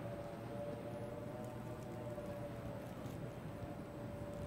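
Quiet room tone in a hall: a steady low hum with a faint steady whine, and no clear events.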